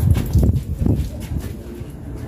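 Dull low thumps and rumble from footsteps and handling of a moving handheld camera, a few irregular knocks in two seconds.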